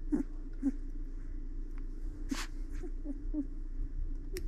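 A two-week-old golden retriever puppy making small grunts and squeaks several times while its nails are clipped, over a steady low hum. A short sharp click comes a little past halfway.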